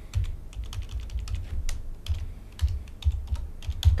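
Computer keyboard typing: a run of irregular keystroke clicks with short pauses, as a command line is edited in a terminal.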